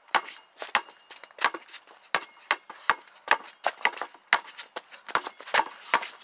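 A basketball being dribbled on concrete: a quick, uneven run of bounces, about two to three a second, as the player works the ball through practice moves.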